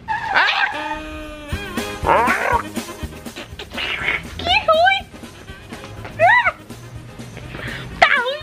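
A woman's wordless reaction to tasting a salted candy strip: gliding, high-pitched squeals and noises of disgust, ending in laughter, over light background music.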